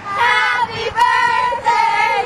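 A group of girls singing loudly together, with one note held for about half a second midway.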